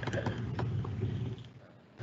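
Low background hum and room noise from the presenter's microphone, with a few faint clicks in the first second; it drops to near silence near the end.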